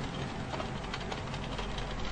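Steady low background hum with a few faint clicks and rustles of a clear plastic DVD case being handled.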